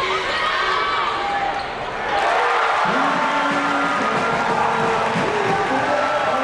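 Basketball game sounds on an arena court: sneakers squeaking on the hardwood and the ball bouncing. About two seconds in, crowd noise and voices rise.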